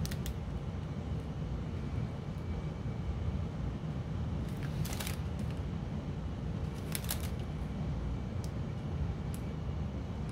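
Small plastic bags of diamond painting drills crinkling and rustling as they are handled, with a few sharper crackles about five and seven seconds in, over a steady low hum.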